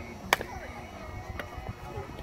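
A softball bat hitting the ball once, a single sharp crack about a third of a second in, with players' voices in the background.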